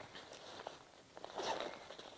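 Faint zipper on a backpack pocket being pulled, with rustling as the pack is handled.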